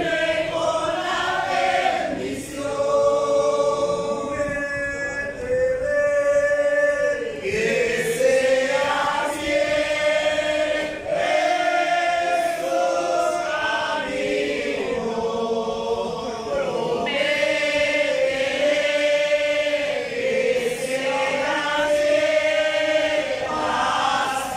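A church congregation singing together in chorus, a slow hymn of long held notes.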